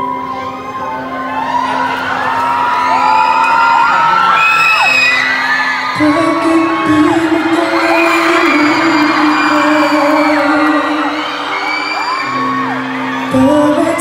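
Live ballad accompaniment of sustained chords under a crowd cheering with many high screams and whoops. From about six seconds in, a male singer's voice comes in over the music.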